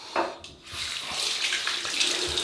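Tap running into a bathroom sink; the water noise starts a little under a second in and grows steadily louder.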